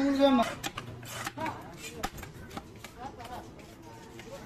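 A knife knocking on a wooden log chopping block as a leather jacket fish is cut, in scattered strokes, the loudest about two seconds in. A voice is heard briefly at the start.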